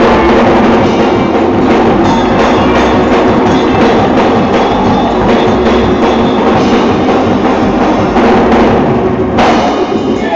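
Loud live gospel praise-break music in a church, with a drum kit driving the beat over sustained instrumental tones. The music breaks off shortly before the end.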